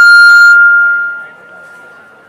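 Public-address feedback: a loud, steady high-pitched whistle from the loudspeakers that fades away over about a second and a half.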